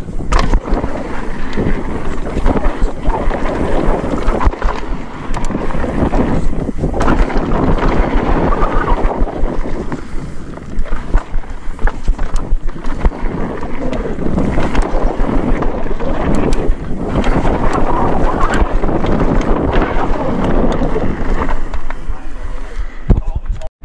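Mountain bike descending a dry, rough dirt trail at speed: a steady rush of wind on the microphone and tyres on dirt, with frequent clattering knocks from the bike over bumps and roots.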